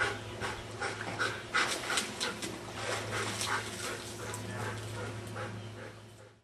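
Dog panting hard, about two to three breaths a second, over a steady low hum; it fades out at the end.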